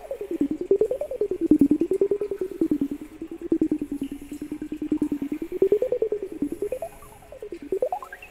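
A hummed vocal tone run through a Boss RC-505 loop station, chopped into rapid even pulses by a slicer effect. It wanders slowly up and down in pitch, then swoops quickly down and back up near the end.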